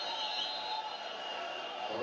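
Faint football match commentary from a television, over a steady background hiss.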